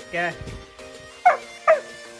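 Young golden retriever giving two short, high barks in quick succession in the second half, over steady background music.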